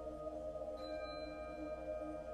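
Concert band holding a soft, sustained chord. A high ringing tone enters just under a second in and sustains over the chord.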